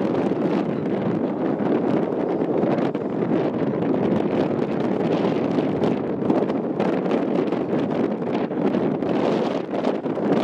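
Steady wind noise buffeting the microphone, a dense low rushing that does not let up.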